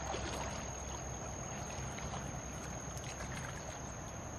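Shallow stream water running, with irregular splashing and sloshing as hands rummage in the water along the streambed.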